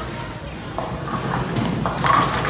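Bowling ball rolling down the lane just after release, a steady low rumble, with voices of a busy bowling alley over it.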